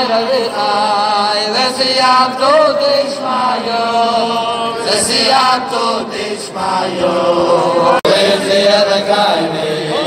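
A group of men singing a chant-like Hasidic wedding melody together, with a brief dropout in the sound about eight seconds in.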